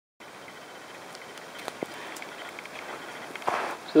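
Steady rushing noise of a homemade wood-gasifier stove burning with its flame forced by a small 5-volt CPU blower fan, growing slightly louder, with a few faint clicks.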